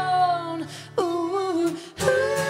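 Live singing with acoustic guitar: a long held sung note, then a new note coming in about a second in and held.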